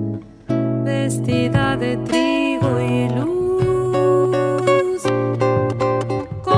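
An Argentine zamba played by piano, acoustic guitar and violin. The music dips briefly at the start and comes back in with a full chord about half a second in.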